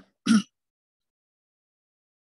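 A person clearing their throat with two quick rasps at the very start.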